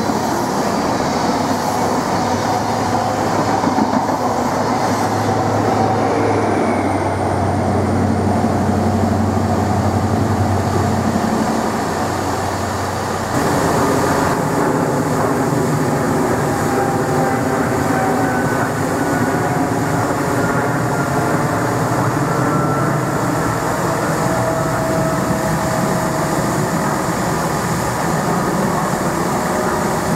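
Diesel trains at a station. First a First Great Western high-speed train passes on the far line with a deep engine hum that eases about twelve seconds in. After a sudden change, a Turbo diesel multiple unit runs at the near platform with a steady engine drone, while another Turbo approaches.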